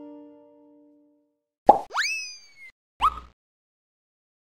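Logo sting sound effects: the background music's last chord dies away, then a sharp pop leads into a quick rising glide, followed by a second short rising blip near the end.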